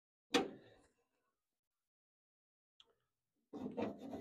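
A single sharp knock against the car door about a third of a second in, then near silence. Near the end a fingers-on-metal scraping and rubbing starts as a hand works grease into the window track inside the door.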